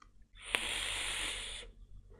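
A long, hard draw on an e-cigarette: about a second of rushing, hissing airflow through the vape, with a sharp click near its start.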